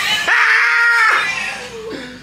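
A high-pitched scream, held steady for about a second and then falling away.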